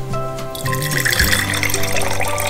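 Liquid poured in a stream from a glass measuring cup into a glass jar, starting about half a second in. Background music with held notes plays under it.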